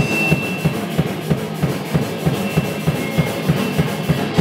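A hardcore punk band playing live, with a fast, driving drum beat of about six hits a second under the full band.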